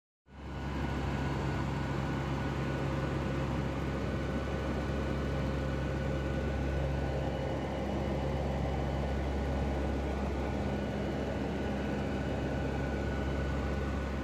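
Steady cabin drone of a turboprop aircraft in flight: a deep rumble with several steady hum tones from the propellers and engines over it.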